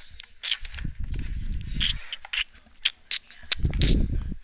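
Handling noise from the phone recording: low rumbling rubbing against the microphone in two stretches, about a second in and again near the end, with scattered small clicks and knocks.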